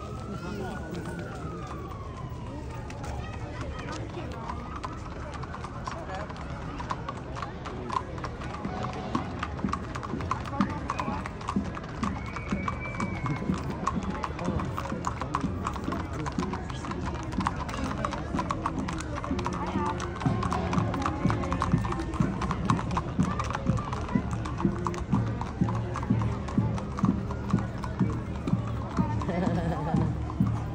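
Horses' hooves clip-clopping on an asphalt street as a group of ridden horses passes. The hoofbeats grow louder and more regular in the second half, with voices and music underneath.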